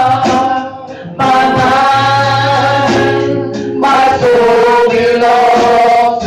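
A woman singing a gospel song through a microphone, holding long notes, with a short pause about a second in, over live church band accompaniment.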